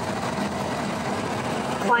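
Construction machinery engine running steadily, a constant low hum.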